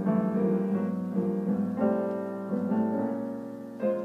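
Jazz piano chords played in a moving sequence, the chord changing about every half second, with the bottom, middle and top voices of each chord all moving to new notes. A fresh chord is struck near the end.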